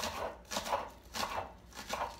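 Kitchen knife slicing green onions on a wooden cutting board: a series of separate chops against the board, about two a second.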